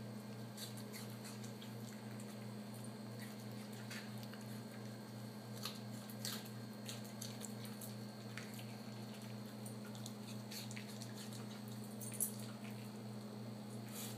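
A small Yorkshire terrier chewing carrot and apple pieces and nosing through a plastic ice cube tray: sparse, light clicks and crunches at irregular intervals, over a steady low hum.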